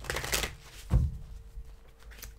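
A tarot deck being shuffled and handled by hand: cards sliding and flicking against each other, with a soft thump about a second in.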